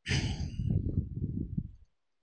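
A burst of breath-like noise into a microphone, like a sigh or a rustle, cutting in suddenly and fading out after nearly two seconds.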